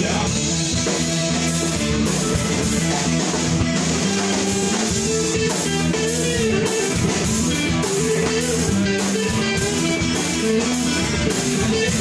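Live funk band playing: electric guitar over a drum kit, with a cymbal struck about twice a second keeping the beat.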